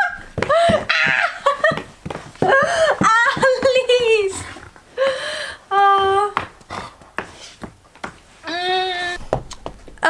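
A woman's voice laughing and exclaiming in short bursts, with scattered rustles and knocks as a dog plays on a plush dog bed.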